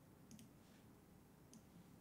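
Near silence broken by a few faint clicks: a small cluster shortly after the start and a single click past halfway.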